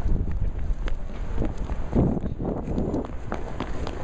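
Footsteps with heavy rumbling handling noise from a jostled handheld camera's microphone.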